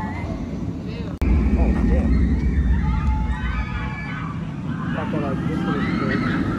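Indistinct outdoor voices and chatter, not close to the microphone, with an abrupt cut about a second in. After the cut a heavy low rumble of wind on the microphone runs under the voices.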